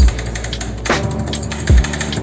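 Metal spatulas chopping and scraping ice cream on a frozen cold plate for rolled ice cream: about three sharp, irregular clacks with dull thuds, over background music.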